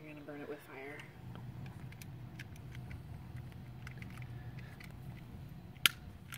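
A person's drawn-out wordless voice sound, wavering in pitch, in the first second, then a steady low hum with scattered faint clicks and one sharp loud click near the end.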